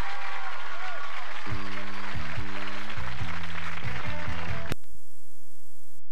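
Studio audience laughing and applauding, followed about a second and a half in by a short music cue of low held chords that cuts off suddenly near the end and leaves only a faint steady hum.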